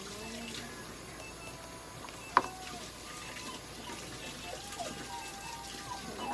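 Water running steadily from a tap, with one sharp click about two and a half seconds in.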